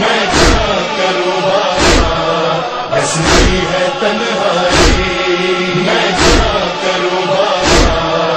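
Voices chanting a sustained, drawn-out lament in a Shia noha, over a sharp, steady thump about every one and a half seconds, six in all, the beat of matam (rhythmic chest-beating).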